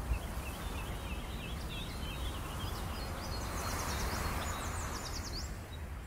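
Outdoor ambience: a steady low rumble with small birds chirping. The chirps start lower and turn into quick high calls in the second half.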